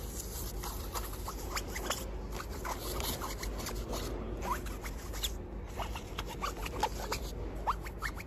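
Fingertips and nails scratching and rubbing in quick strokes over the synthetic-fabric carry bags of packed air mattresses, giving many short scratches and small rising squeaks. A steady low hum runs underneath.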